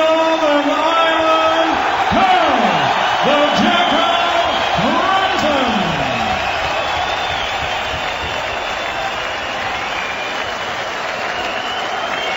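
A ring announcer's long, drawn-out call at the start, with a few swooping rises and falls of voice over the first half, over a large arena crowd cheering and applauding steadily for the winner.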